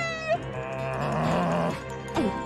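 A cartoon squirrel's laugh trails off with a falling pitch, followed by a hazy stretch of background music with steady low notes.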